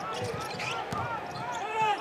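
Live court sound from a basketball game: a basketball dribbled on a hardwood floor, with short high squeaks from sneakers coming several times a second.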